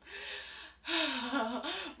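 A woman sighing audibly: a breath drawn in, then a long voiced sigh with a wavering pitch, a mock-sad sigh over clothes that didn't fit her.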